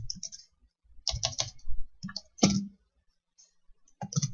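Computer keyboard typing in short bursts of a few keystrokes each, with pauses between the bursts.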